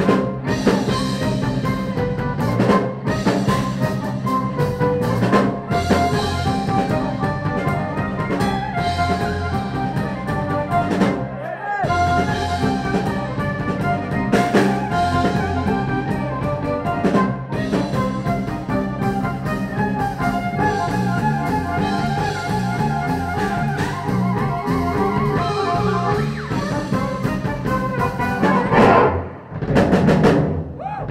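Live band playing an instrumental piece on accordion, violin and drum kit, with a short break near the end before the drums come back in hard.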